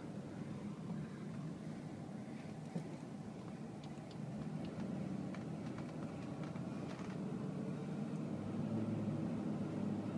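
Low, steady running noise of a slowly driven vehicle heard from inside the cab, engine and tyres, with a few faint ticks; it grows slightly louder near the end.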